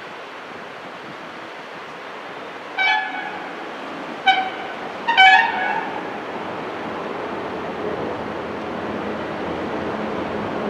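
A vehicle horn honking three times a few seconds in, the last honk the longest, over a steady outdoor background hiss.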